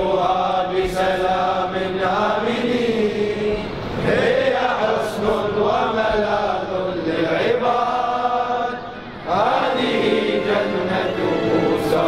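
Devotional Arabic chanting with long held notes that waver and slide between pitches, one phrase running into the next, with a brief break about nine seconds in.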